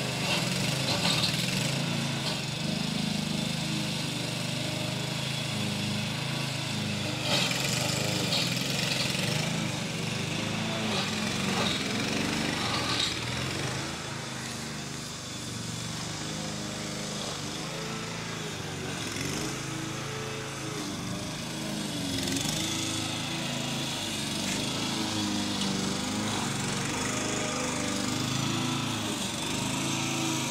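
Engine-driven walk-behind lawn mower running steadily while cutting dry, dusty grass. Brief louder rasping bursts come now and then, about a second in, around a quarter of the way through, and again near the middle.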